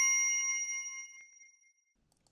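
A bell-like notification ding sound effect, several clear pitches ringing together and fading away, gone by about a second and a half in.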